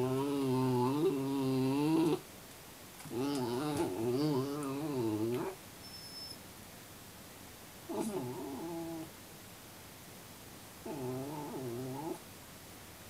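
Miniature Schnauzer howling from inside its crate: four wavering, pitched howls, the first two long and loud, the last two shorter and quieter with pauses between.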